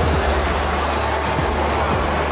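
Steady, loud background din of a busy exhibition hall, with music playing underneath.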